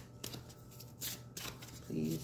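Oracle cards being handled as one more card is drawn: a few short, crisp card rustles and flicks, the loudest about a second in.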